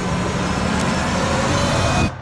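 Horror-film sound design: a dense, noisy rumbling swell with a few faint high tones in it, building up and holding steady before cutting off abruptly.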